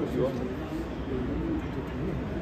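People talking in French, with a low bird call mixed in.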